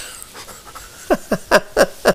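An elderly man laughing: breathy chuckles, quiet at first, then a quick run of short bursts from about a second in.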